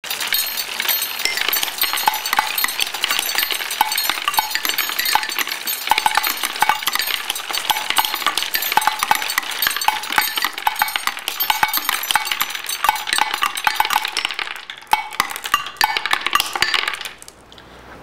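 Wooden Marble Machine 2.1 running: a dense, continuous clatter of glass marbles rolling, clicking and dropping onto wood and metal parts. It thins out and stops about a second before the end.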